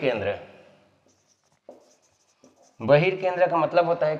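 A man speaking for the first second and again from about three seconds in, with faint marker strokes on a whiteboard in the quiet gap between.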